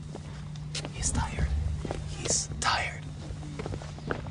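Whispered speech in short hushed phrases, over a steady low hum.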